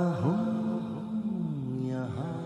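Closing bars of a Hindi film love song: long held, gliding vocal notes, fading and quieter than the body of the song.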